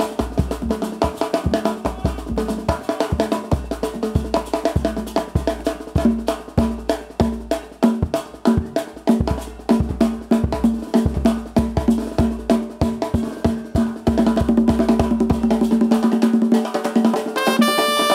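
Live percussion break on drum kit and congas: rapid snare and bass-drum hits under the conga rhythm. Brass horns come in near the end.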